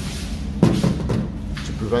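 A single knock about half a second in, over a steady low hum.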